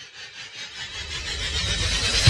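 A noisy swell that rises steadily in loudness with a slight pulsing, building up into the start of a rock track.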